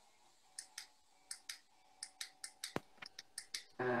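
A run of about fifteen light, irregular clicks over some three seconds, one sharper than the rest a little after halfway, with a faint steady tone beneath them.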